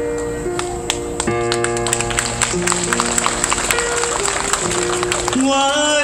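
A live band plays a slow instrumental introduction to an old Taiwanese-language ballad: sustained keyboard chords with light percussive taps. Near the end a melody line with vibrato comes in.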